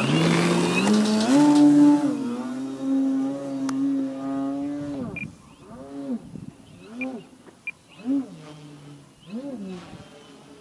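Skywing 55-inch Edge 540T radio-control aerobatic plane's motor and propeller. The pitch climbs in steps as the throttle opens, then holds steady for a few seconds. After that come about five short swells that rise and fall in pitch as the plane manoeuvres overhead.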